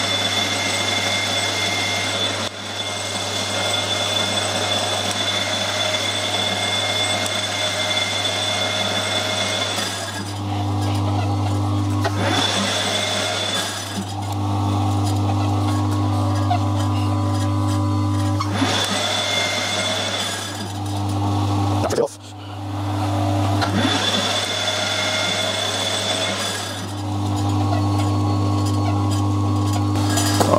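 Metal lathe running, a carbide tool turning down a small metal pin in repeated passes. A constant low hum runs under a high steady whine that comes and goes, alternating with a lower tone several times, with a brief drop in level about two-thirds of the way through.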